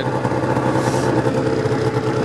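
Arctic Cat ZR 600 snowmobile's two-stroke engine running steadily at an even pitch.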